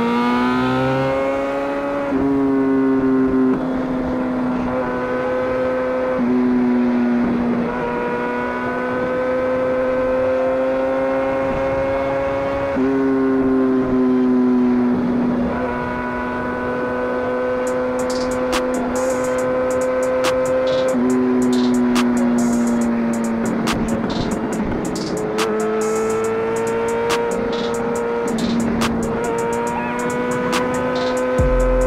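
2017 MV Agusta F4 RR's inline-four engine, fitted with an SC Project exhaust, running at high revs under way. The pitch rises in the first two seconds, then holds steady with a few small steps up and down as throttle and gears change.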